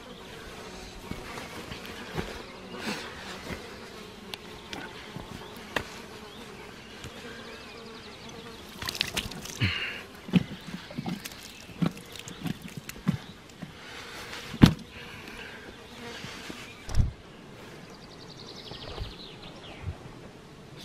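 Insects buzzing steadily close by. Over the second half come scattered thumps and rustles of a deer carcass being handled and lifted, the loudest about two thirds of the way in.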